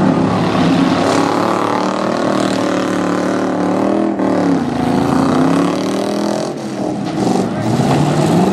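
Several V8 demolition derby cars revving hard together, their engine notes rising and falling, with a dip in revs about halfway through.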